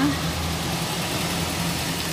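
A steady low mechanical hum, like a motor or engine running, with an even noisy wash over it.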